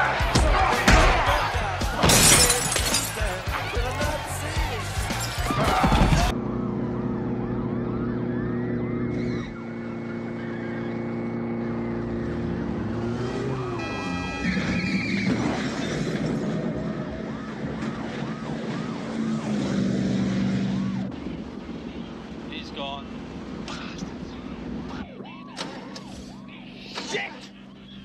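Movie sound effects of a fistfight: hits and crashes with glass shattering, the loudest crash about two seconds in. About six seconds in it changes to a car chase: engines running under music, with a siren rising and falling.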